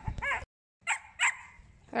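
A dog giving two short, sharp yips about a second in, a quarter second apart, after a brief voice-like sound at the start and a moment of dead silence.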